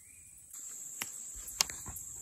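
Evening insect chorus of crickets: a steady high-pitched trill that grows louder about half a second in. A few sharp clicks stand out over it, the loudest a little past halfway.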